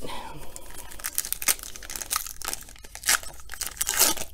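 Foil trading-card pack wrappers crinkling in the hands and a pack being torn open, a dense run of sharp crackles.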